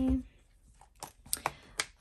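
A few light clicks and taps in the second half as a small Louis Vuitton PM agenda is handled on a desk and its snap strap is undone.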